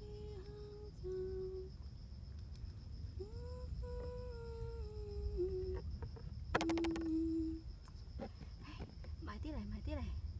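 Someone humming a slow tune in long held notes that glide between pitches, with a sharp click about six and a half seconds in and short wavering hums near the end. A faint steady high-pitched drone runs underneath.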